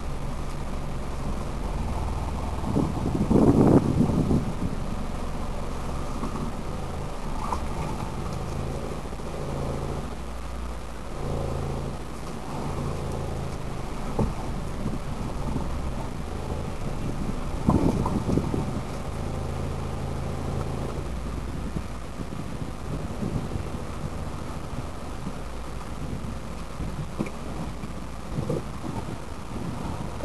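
A car's engine and road noise heard from inside the cabin while driving, the engine note stepping up and down. Two louder noisy swells stand out, about three and eighteen seconds in.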